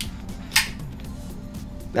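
A background music bed plays steadily, with one sharp metallic click about half a second in from the Boker Kihon's blade, an assisted-opening folding knife with a copper handle, as it is worked.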